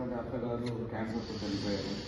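A man speaking into a podium microphone, with a steady hiss in the background from about a second in.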